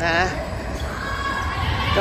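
Volleyballs being hit and bouncing on an indoor court floor during team practice.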